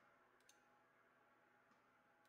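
Near silence, with two faint computer mouse clicks about half a second in.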